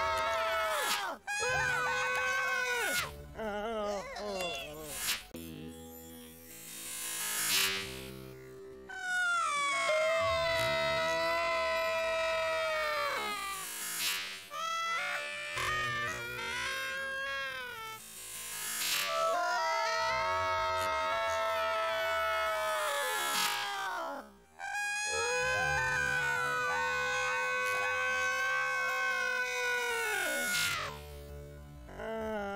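Cartoon characters' long drawn-out wailing cries, several in a row, each held for a few seconds and sliding down in pitch as it dies away, over cartoon music.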